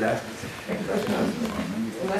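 A man's low, drawn-out voice between spoken phrases, fairly quiet.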